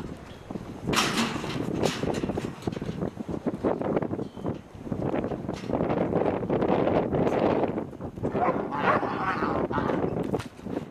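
A yearling bucking bull bucking in a dirt pen after leaving the chute: an irregular run of hoof thuds and knocks against the ground, with people's voices calling out near the end.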